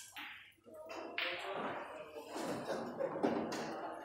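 Pool balls after a shot: a sharp click near the start, then a louder rushing noise that sets in about a second in and carries on until near the end.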